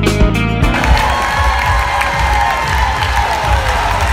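Guitar music cuts off under a second in, giving way to an audience cheering and applauding.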